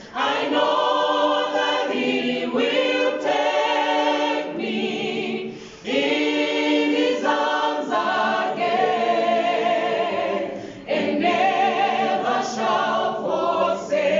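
Mixed-voice choir of men and women singing a cappella in harmony, in phrases with short breaks about six and eleven seconds in.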